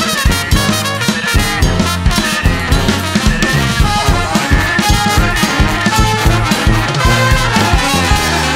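Brass band playing a loud funk groove: trumpets and trombones over a steady, punchy beat of percussive hits.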